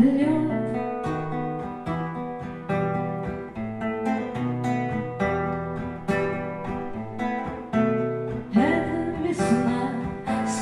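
Classical guitar played solo, a picked and strummed instrumental passage between verses, in a steady rhythm of separate chords and notes. A woman's singing voice fades out at the very start and comes back near the end.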